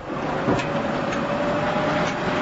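Heavy diesel construction vehicle running steadily, with a faint steady whine over the engine noise and a light knock about half a second in.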